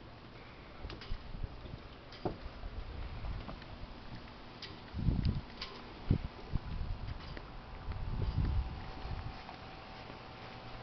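Handheld-camera sound outdoors while walking: irregular low rumbles of wind on the microphone, loudest about halfway through and again near the end, with scattered light footsteps and clicks. A faint steady hum comes in during the second half.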